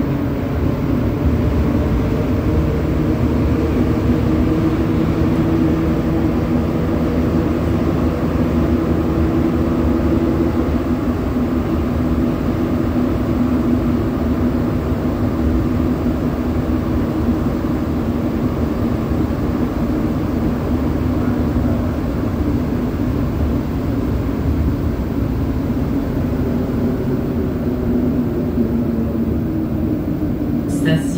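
Montreal Metro Azur (MPM-10) rubber-tyred train running at speed through the tunnel, heard from inside the car. A steady rumble of the running gear carries a hum of several steady motor tones.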